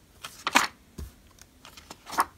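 Pages of a spiral-bound paper workbook being turned and handled, giving a few short paper rustles, the loudest about half a second in, and a soft knock about a second in.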